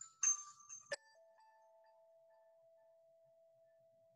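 A faint chime: two short, bright tones with some hiss in the first second, then a click and a lower tone that rings on steadily for several seconds, slowly fading.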